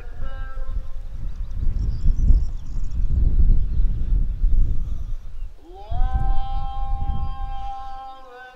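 Wind buffeting the microphone with a fluctuating low rumble. Near the end a long melodic note glides up and then holds steady.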